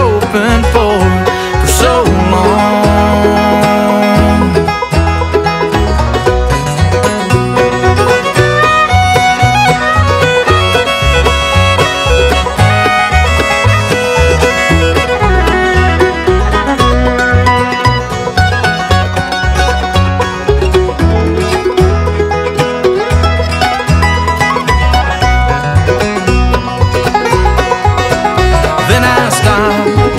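Bluegrass band playing an instrumental break with no singing: bowed fiddle and picked five-string banjo over rhythm guitar, with steady low bass notes underneath.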